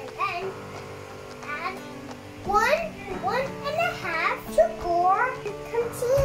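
A young girl's high voice chattering in short swooping phrases, over background music with steady held tones.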